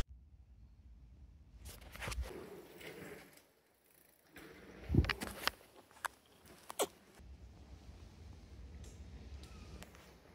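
Faint rustling of a fleece jacket being taken off, handled and put down on a wooden bench, with a few short sharp clicks and knocks in the middle.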